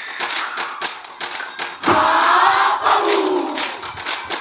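A Samoan group dance: quick, rhythmic hand slaps from the performers, then about two seconds in, a loud unison shout from the group that is held briefly and falls away in pitch.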